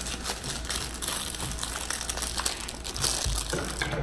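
Packaging rustling and crinkling as fingers pick and pull at the tape on a small cardboard shipping box: a continuous rustle full of small crackles, with a soft thump near the end.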